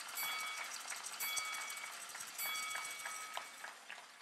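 Audience applauding, fading toward the end. A steady high multi-note tone sounds three times over it, about a second apart.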